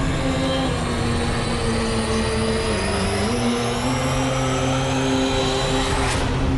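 Cinematic promo soundtrack: held low drone notes that step down in pitch about halfway, under a rising high whoosh that builds into a sudden hit at the end.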